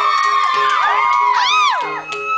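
Electronic keyboard or synthesizer playing swooping, arching pitch glides over a repeated pulsing note, with no drums.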